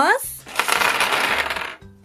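A handful of small plastic counting bears dropping and clattering onto a hard tabletop, a dense rattle lasting about a second.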